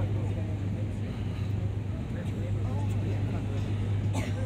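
Passenger ferry's engine running at cruising speed, a steady low drone.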